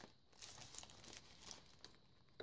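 Faint rustling and crinkling of paper as hands shift and lift torn journal pages and paper ephemera, in a few short bursts.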